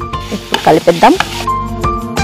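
Diced paneer and vegetables sizzling in a hot non-stick kadai while a spatula stirs them, with background music playing.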